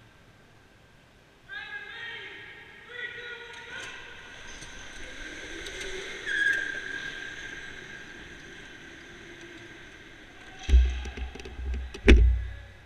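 Electric go-kart motors whining in steady high tones that start about a second and a half in and step up a few times. Near the end come several heavy low thumps and sharp knocks, the sound of karts bumping.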